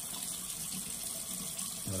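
Tap water running steadily into a bathroom sink.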